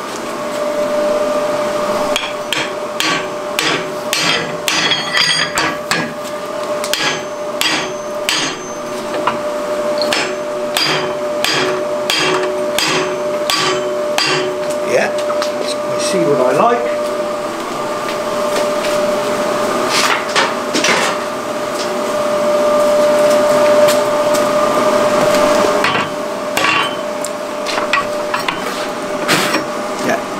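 Hammer blows on red-hot mild steel, driving two interlocking cleft ends together in a vise to join the bars. The blows are rapid and irregular for the first half, then come in a few shorter runs.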